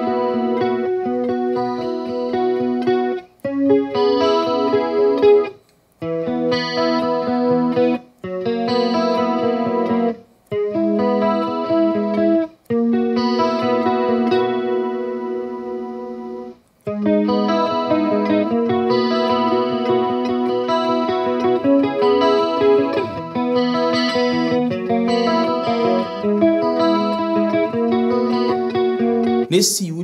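Electric guitar on a clean tone, picking an arpeggiated riff one note at a time, played in several runs with short breaks between them.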